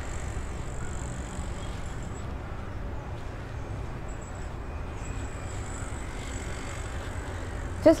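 Steady low background rumble with a faint high whine and no distinct events.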